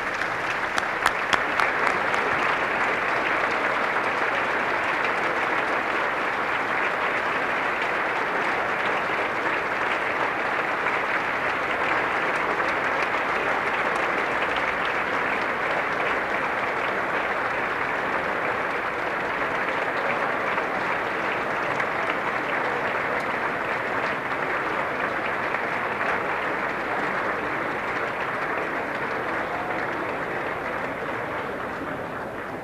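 Sustained applause from a large chamber full of standing legislators, many hands clapping at once, steady throughout and easing slightly near the end.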